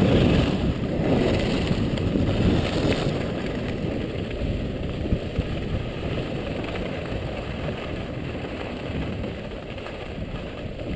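Wind rumbling on an action camera's microphone during a ski descent. It is loudest in the first few seconds and settles to a lower, steady rumble, with one short click about halfway through.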